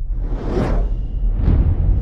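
Logo-animation sound effects: two whooshes that swell and fade about a second apart, over a deep, steady low rumble.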